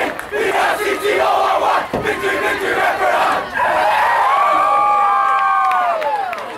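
A football team shouting together in a huddle: many young men's voices yelling at once, building into a long, held group yell from about three and a half seconds in that falls off in pitch at the end.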